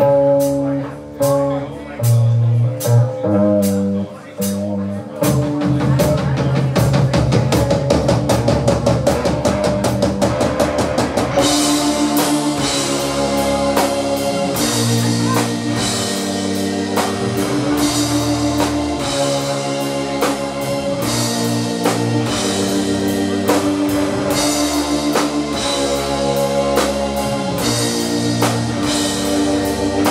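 Live rock band playing loud: a few stop-start guitar and bass chords, then rapid drum hits build from about five seconds in, and about eleven seconds in the full band comes in with cymbals and a steady riff.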